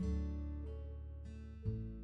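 Background music: acoustic guitar chords strummed and left to ring and fade, with a new chord struck about a second and a half in.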